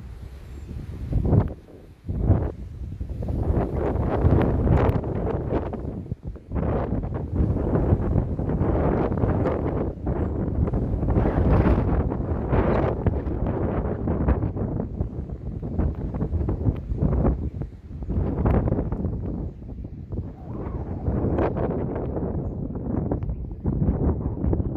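Wind buffeting a phone microphone, a loud low rumbling noise that gusts and eases every second or two, with brief lulls near the start and about six seconds in.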